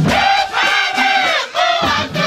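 A large group of girls singing a chant loudly in unison, in long shouted phrases that break roughly twice, with clay pot drums struck under the singing.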